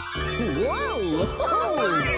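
A magical twinkling sparkle sound effect with a rising shimmer, marking a plush toy coming to life, followed about half a second in by a character's voice calling out with big swoops up and down in pitch.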